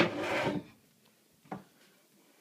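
Kitchen cabinet handling: a sharp wooden knock followed by about half a second of scraping rustle, then a light click about a second and a half in.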